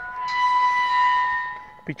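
Steel pipe cattle gate swinging on its hinges, the metal squealing at one steady high pitch for about a second and a half before fading out.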